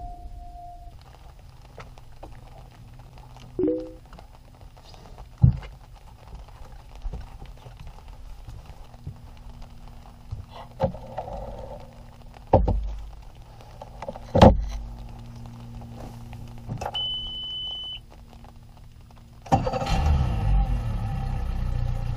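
Scattered knocks and thumps of gear being handled on a boat, with a one-second electronic beep, then an outboard motor starts and runs steadily near the end.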